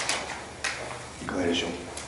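A person's voice speaking in a meeting room, with two sharp knocks, one at the start and one about two-thirds of a second in.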